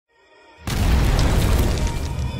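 Music intro opening with a sudden loud boom hit about two-thirds of a second in: a deep rumble with a wash of noise that holds and starts to fade near the end.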